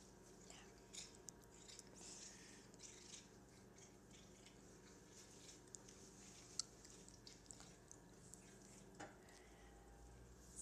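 Near silence with faint small wet clicks and smacks of a cat chewing a piece of ham, and one sharper tick about six and a half seconds in.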